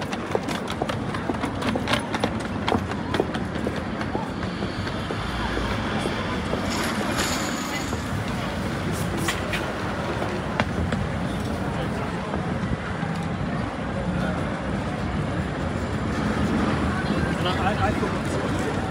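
Busy city street ambience: many passers-by talking indistinctly, with scattered sharp clicks of footsteps and a low rumble of traffic and wind on the microphone underneath.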